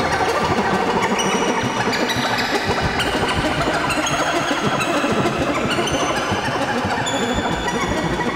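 Moog Grandmother semi-modular analog synthesizer playing a dense, busy experimental texture of many short tones at shifting pitches, fed through a Boss DM-2w delay and a Boss RV-5 digital reverb.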